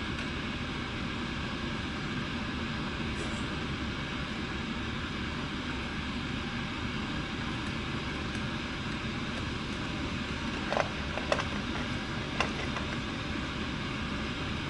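Small dogs eating from bowls on a hard floor: a few sharp clicks, three of them in the last few seconds, over a steady hiss of background noise.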